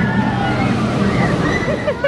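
Steel roller coaster train running on its track with a steady rumble, while the riders' screams rise and fall over it.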